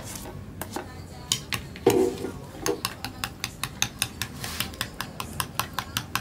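A utensil beating raw eggs and chopped vegetables in a glass bowl, clinking against the glass about four times a second.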